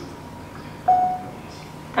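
A single short beep-like tone at one clear pitch, starting suddenly about a second in and fading out within about half a second, over quiet room tone.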